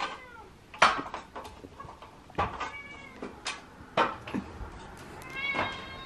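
A cat meowing three times, the last call the longest, as it asks to be fed. A few sharp knocks fall between the meows.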